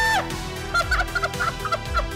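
A woman's high, held excited scream that breaks off a moment in, followed by a quick run of short, breathy giggles.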